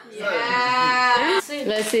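A person's voice holding one long, drawn-out cry at a steady pitch for just over a second, followed by a few quick spoken syllables.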